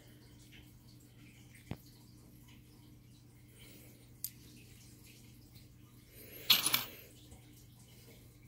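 Small stone artifacts clicking against each other as they are handled and set down: a sharp click, a fainter one, then a brief louder clatter about six and a half seconds in, over a steady low hum.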